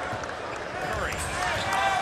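Basketball game sound on an arena court: a ball bouncing on the hardwood a few times over a murmuring crowd.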